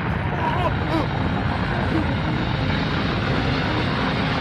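Anime sound effects: a loud, steady, dense rumble, with a few short rising-and-falling cries in the first second.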